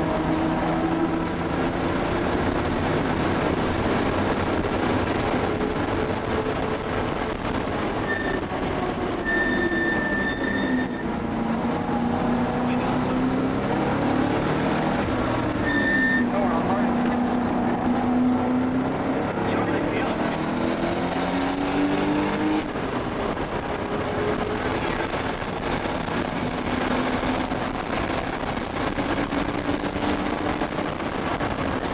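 Air-cooled 3.3-litre turbocharged flat-six of a 1979 Porsche 930 Turbo, heard from inside the cabin on track, its pitch falling as the car slows and rising again under acceleration, several times over. A few short high tones sound around the middle.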